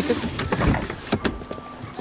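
Car door sounds: two heavy thuds, about half a second apart, as a car door is opened and shut.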